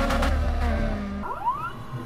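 Honda Integra Type-R (DC2) engine running at high revs as the car drives past, fading away after about a second, followed by a brief rising sweep in pitch.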